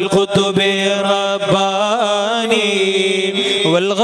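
A man chanting a devotional melody into a microphone. His notes waver and glide, and near the end he holds one long, steady note.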